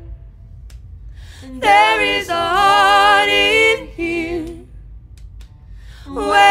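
Unaccompanied vocal group singing in harmony: one long held phrase starting about a second and a half in, then a short note just after, over a low steady hum.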